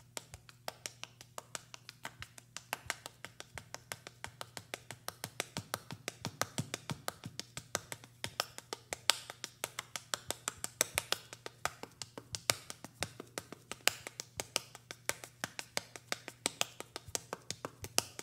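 A step dancer's hard-soled shoes tapping out a quick, even rhythm on a stage floor, several taps a second, growing louder over the first few seconds. A steady low hum runs underneath.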